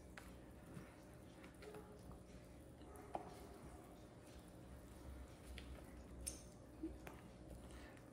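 Very faint folding of cake batter with a silicone spatula in a glass mixing bowl: soft squishing, with a few light clicks scattered through, the clearest about three seconds in.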